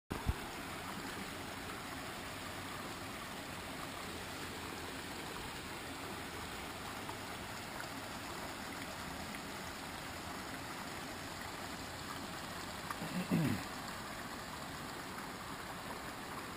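Shallow rocky creek running over and between boulders: a steady, even rush of water. A brief low thump comes about thirteen seconds in.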